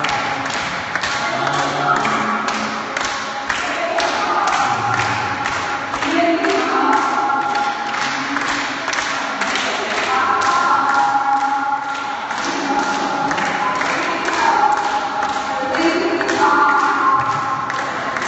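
A group of voices singing long held notes together, several pitches at once, moving to new notes every few seconds. Under them runs a steady quick beat of thumps or taps, about three a second.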